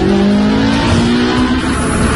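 A car engine running at high revs, its pitch held nearly steady and creeping slightly upward.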